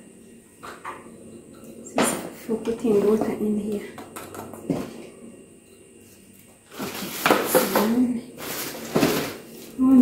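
Plastic packaging rustling and crinkling loudly for a couple of seconds near the end, as a wrapped item is handled. Earlier there is a sharp knock on the counter and a woman's brief voice, without clear words.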